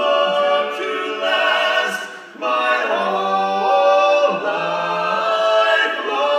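Male barbershop quartet singing a cappella in close four-part harmony, holding sustained chords, with a short break a little past two seconds in before the voices come back together.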